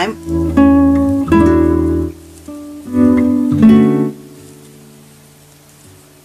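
Background music of acoustic guitar: a few strummed chords that ring and then fade away about four seconds in.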